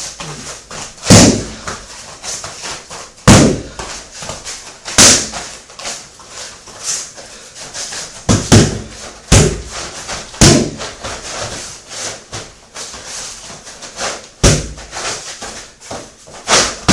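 Strikes in boxing gloves landing on focus mitts: an irregular series of about eight sharp impacts, a second or more apart, some loud and a few lighter.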